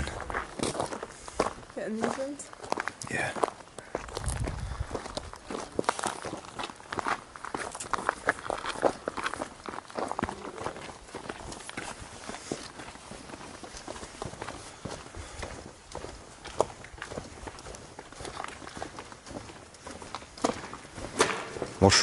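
Footsteps of people walking over gravel and gritty pavement: a quick, irregular series of steps.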